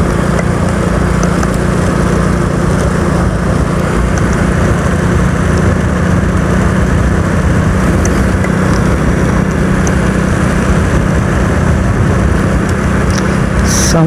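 Motorcycle engine running at a steady cruise, a constant hum under a heavy, even rush of wind and road noise.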